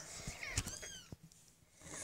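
A young kitten mewing faintly: one short, high-pitched call about half a second in.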